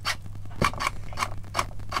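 A run of light clicks and scratches, roughly four a second, from the opened tillerpilot and its wiring being handled, over a low steady hum.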